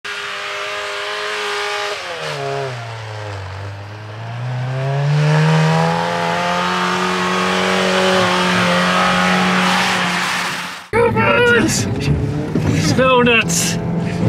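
Stock 2017 Jeep Renegade Trailhawk's four-cylinder engine revving while its tires spin and churn through deep snow. The revs dip about two seconds in, then climb and hold high and steady for several seconds. Near the end it gives way to speech over engine noise from inside the cabin.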